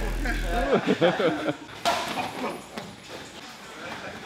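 A man laughing in short bursts over background music that cuts off within the first second; about two seconds in comes a single sharp hit from a sparring glove strike.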